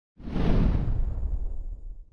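Whoosh sound effect for an animated logo reveal, coming in sharply just after the start and fading away over nearly two seconds, with a deep, rumbling low end.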